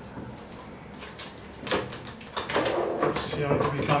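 A wooden paddle stirring thick cleaning gel in a plastic bucket, with a few soft knocks and scrapes that grow sharper halfway through. A man's voice starts talking over the stirring in the second half.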